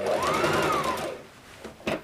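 Brother electric sewing machine stitching a seam in cotton fabric in a short burst: the motor speeds up and slows again over about a second, then stops. A single sharp click follows near the end.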